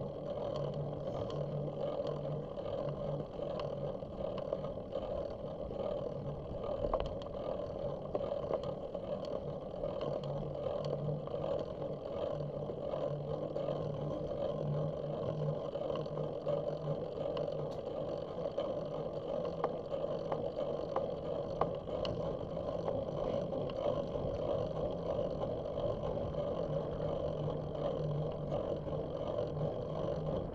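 Bicycle rolling along a paved path, heard through a bike-mounted camera: a steady drone of tyre and wind noise, with a low hum that comes and goes and a few faint ticks.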